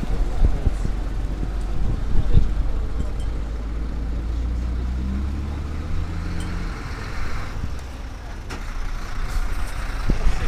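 A vehicle engine running with a low, steady rumble that is strongest in the middle and eases off about two-thirds of the way through, with a few scattered clicks.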